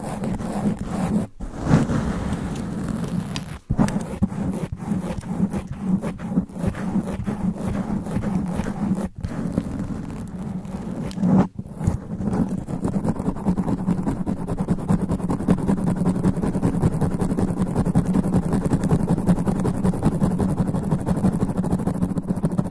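Long fingernails scratching fast over a microphone's sponge cover, right at the capsule: dense, rapid scratching and rubbing with a heavy low rumble, broken by brief gaps about a second in, near four seconds and again around nine and eleven seconds. From about twelve seconds on it turns into a steadier, duller rubbing.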